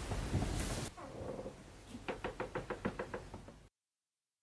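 A fading wash of noise in the first second, then a quick, even run of about a dozen light knocks, roughly seven a second, that stops and drops into sudden silence.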